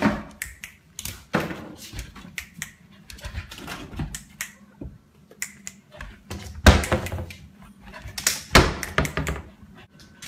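Drawers being pushed shut by a dog: a series of short knocks and thuds, loudest about two thirds of the way through, with another cluster near the end.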